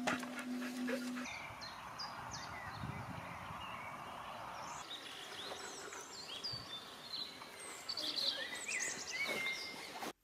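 Birds chirping and singing, many short high calls and quick sweeps over a steady outdoor hiss, busiest near the end. A low steady tone stops about a second in.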